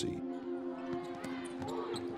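Arena ambience: scattered short knocks and thumps, like basketballs bouncing on a hardwood court, over a steady low hum.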